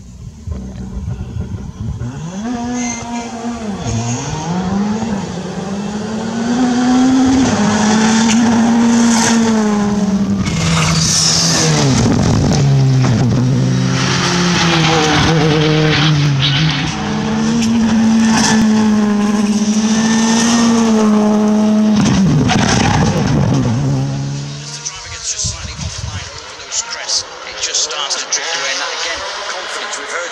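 Rally cars passing at speed, their engines revving hard. The pitch climbs and then drops in steps at each gear change. The sound falls away about four-fifths of the way through.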